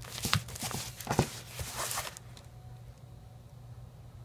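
Plastic vacuum-sealer bag being handled: a few brief rustles and light taps in the first two seconds, then faint background.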